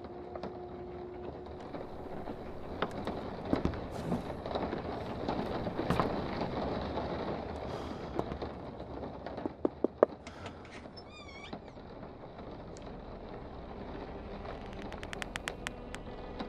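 Quiet, tense film ambience: a low steady hum under scattered soft knocks and clicks. About ten seconds in come a few sharp clicks, as of a door latch, then a short wavering creak as the door swings open, and a fast run of ticks near the end.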